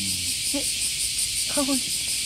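A chorus of insects shrilling without a break, high-pitched with a fast, regular pulse.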